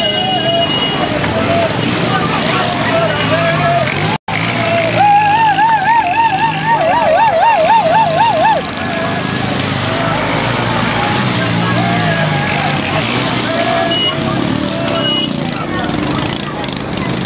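People talking, most likely in Dagbani, over steady background noise. From about five seconds in, a loud high warbling sound runs for about three and a half seconds, its pitch wobbling faster and deeper towards its end.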